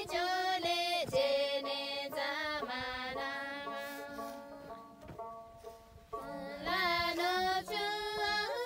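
A song with a high female voice singing a melody in long, gliding notes over light instrumental accompaniment; it grows quieter about halfway through, then the voice comes back strongly near the end.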